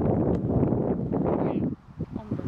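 Wind buffeting the microphone: a steady, low rumbling noise with irregular gusty flutter, which drops away abruptly near the end.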